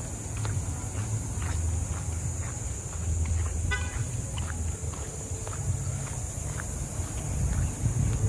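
Footsteps of a person walking while filming, as faint clicks about once a second over a steady low rumble on the microphone. A single brief high-pitched toot sounds a little before the middle.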